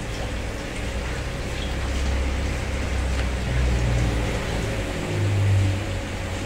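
Aquarium aeration running: a steady electric hum under bubbling water, with a low rumble that swells a few times.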